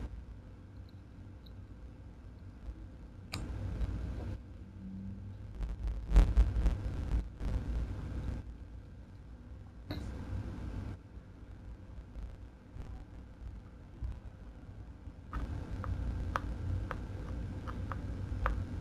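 Faint low rumbling and rustling from handling, with a few light clicks near the end.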